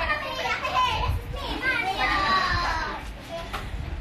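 Children's voices in the background, high and gliding up and down as they play and call out.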